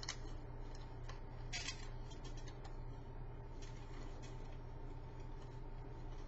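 White cardstock box being folded and handled: short, scattered papery crinkles and taps, the loudest about a second and a half in, over a steady low hum.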